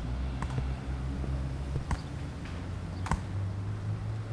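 Metal crutches tapping on asphalt: a few sharp clicks a second or more apart, the last the loudest, over a low steady hum.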